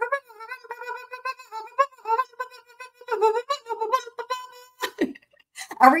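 A woman's voice holding one long, wavering sung note for nearly five seconds, dipping lower briefly midway, then a short click.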